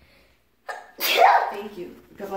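A girl sneezes once about a second in: a quick in-breath, then a sharp sneeze that fades within half a second, followed by a little voice.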